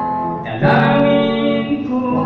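A man singing a gospel song into a microphone while strumming an acoustic guitar. A fresh strum and a louder held note come in about half a second in.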